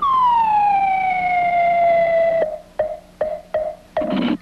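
Cartoon sound effect for a long golf shot: a whistle that falls in pitch and levels off over about two and a half seconds, then cuts off sharply. It is followed by a run of five short knocks, about three a second, each with a brief tone.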